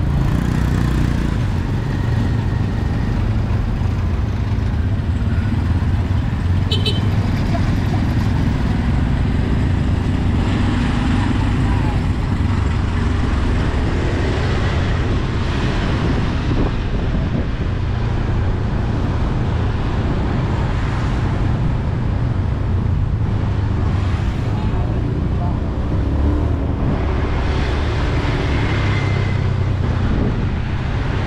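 Steady low engine rumble with road and wind noise while riding through city traffic in a motorbike-drawn tuk-tuk. A short high tone sounds once about seven seconds in.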